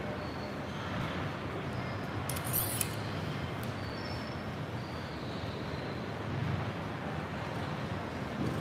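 Large-gym ambience: a steady low hum with faint voices in the background, and one brief clatter about two and a half seconds in.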